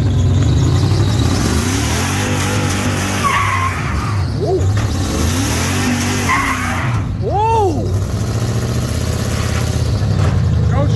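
Dodge Ram 1500 pickup engine revving up and down while the rear tires spin and squeal on pavement, a burnout. A sharp rising-then-falling squeal comes about seven seconds in.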